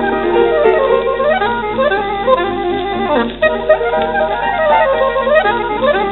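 Saxophone with piano accompaniment playing fast virtuoso runs that sweep up and down, from a 1936 78 rpm shellac record. The sound is muffled, cut off above the upper midrange, with a steady low hum beneath.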